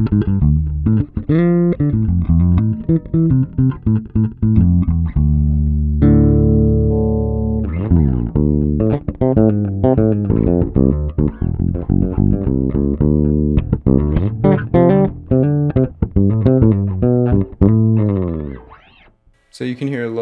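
Kiesel LB76 electric bass played through an Aguilar Tone Hammer 500 head with its drive turned up high, giving an overdriven, growling tone: a busy run of quick plucked notes with one held note about six seconds in. The playing dies away near the end.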